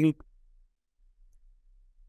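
A man's spoken word trailing off, a faint short click just after, then near silence in a pause between phrases.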